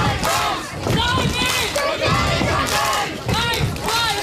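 A group of young people huddled together, shouting in unison as a rallying cry, with many voices overlapping and rising and falling in pitch.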